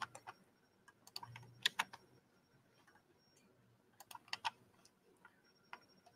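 Faint clicks of a computer keyboard being typed on, in a few short bursts of keystrokes with pauses between them.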